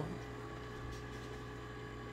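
Room tone: a steady low electrical hum with a few faint constant tones and nothing else happening.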